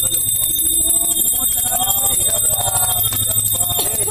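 Small brass puja hand bell rung continuously with quick strokes, its high ringing tones held steady while voices of the devotees carry on over it.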